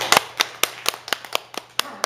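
One person clapping in applause, about four sharp, even claps a second.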